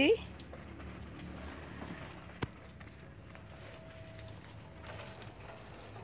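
Faint, steady hiss of running water pouring over potted orchids, with a single sharp click about two and a half seconds in.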